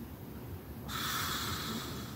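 A person wearing a full-head silicone mask breathes out hard through it: a breathy hiss that starts about a second in and carries on to the end.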